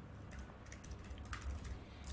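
Faint typing on a computer keyboard: irregular light key clicks.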